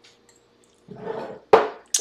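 A man drinking a sip of white wine from a glass, followed by a breathy exhale, with a short sharp knock near the end.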